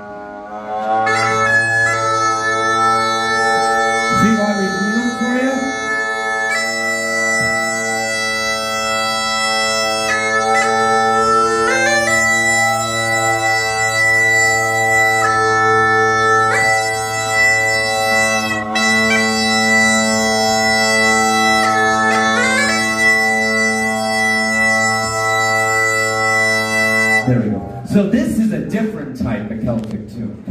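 Two sets of bagpipes playing a melody together over a steady drone, starting about a second in and cutting off shortly before the end.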